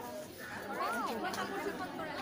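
Chatter of many schoolgirls talking at once, with one voice rising and falling in pitch about halfway through.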